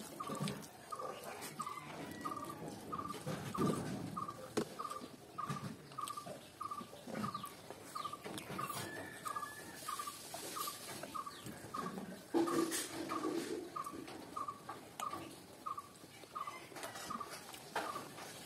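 Eating by hand: fingers mixing rice and curry on a plate, and chewing, in irregular soft bursts. Behind them a short chirp-like tone repeats steadily about one and a half times a second.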